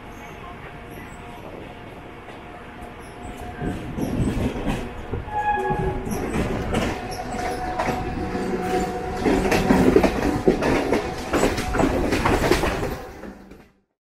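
Mumbai suburban EMU local train running, heard from its open doorway: wheels clattering over rail joints and points, with a few brief wheel squeals. It grows louder from about four seconds in as a second local train runs close alongside, and fades out just before the end.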